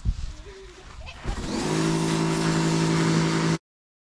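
Electric pressure washer starting up about a second in, after a short knock, and running with a steady motor hum under the hiss of its high-pressure spray. The sound cuts off suddenly near the end.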